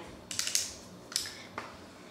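Makeup products being handled while reaching for setting powder: a few short clicks and rustles.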